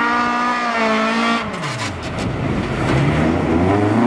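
Ford Fiesta ice-racing car's engine held at high revs while drifting. About a second and a half in the revs fall away, with a few sharp cracks. Near the end the revs climb again as it accelerates.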